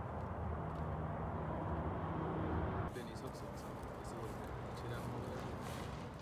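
Indistinct voices over a song playing in the background, with an abrupt cut about three seconds in.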